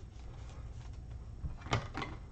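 Faint rustling and ticking of a trading card in a thin plastic sleeve being handled, over quiet room tone. About one and a half seconds in, a single short spoken word is louder than the rest.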